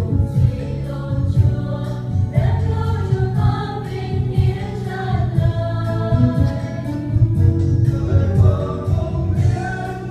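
Mixed choir of men and women singing a Vietnamese Christian song of thanksgiving in harmony, over an accompaniment with a steady beat and a strong bass line.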